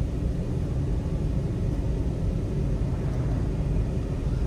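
Steady low rumble of a car's engine and tyres heard from inside the cabin while driving slowly in traffic.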